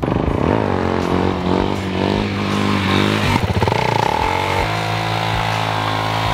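Suzuki DR-Z400SM supermoto's single-cylinder engine being ridden, its revs falling and rising several times, then holding at a steady pitch for the last second or so as the bike comes to a stop.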